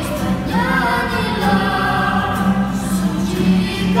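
A small vocal group of children and a woman singing a hymn with acoustic guitar accompaniment, holding long notes that step in pitch.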